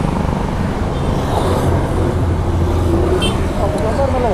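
Steady low engine rumble of a motorcycle idling, mixed with road traffic noise, swelling slightly about halfway through.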